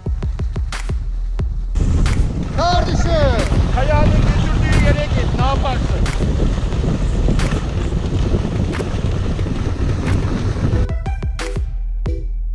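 Wind buffeting the microphone of a pole-mounted action camera while skiing downhill, a loud steady rumble with scattered clicks and scrapes; a voice shouts a few times about three to five seconds in. Background music takes over about eleven seconds in.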